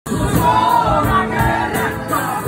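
Live band music, amplified through a PA, with a male singer singing into a microphone and drums keeping a steady beat.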